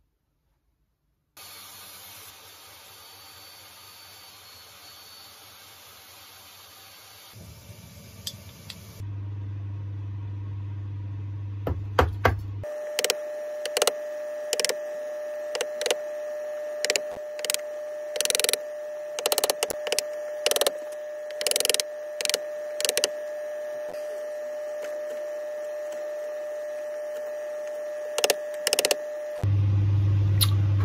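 Workshop sounds in several short stretches: a steady hiss, then a low hum, then a long run of irregular sharp knocks on wood over a steady tone.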